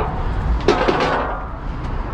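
Bicycle rattling as it is pushed up stairs with its wheel rolling in a steel wheeling channel, with a sharp metallic clank about two-thirds of a second in, over a steady low rumble.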